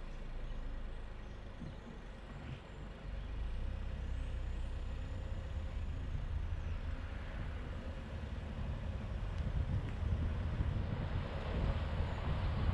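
Car driving slowly at low speed: a low engine and tyre rumble that steps up about three seconds in and grows louder again near the end as the car picks up speed.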